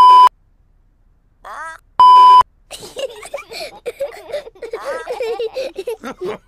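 Two loud, steady bleeps of a single pure tone, each about a third of a second long and about two seconds apart, with a short pitched chirp just before the second. From about three seconds in, a cartoon voice laughs and babbles.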